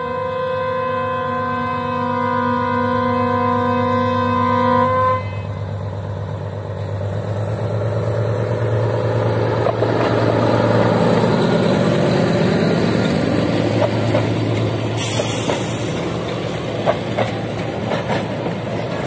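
Lxd2 narrow-gauge diesel locomotive sounding a long chord horn blast that stops about five seconds in. Then its diesel engine grows louder as it passes close by hauling carriages, with a few wheel clicks over the rail near the end.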